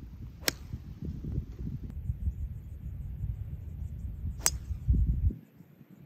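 Two golf shots: a golf club strikes the ball with a sharp click about half a second in, and again about four and a half seconds in. Wind rumbles on the microphone throughout.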